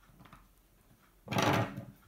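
Hands handling the wooden nest frame on the tabletop: one short scraping rustle about a second and a half in, lasting about half a second.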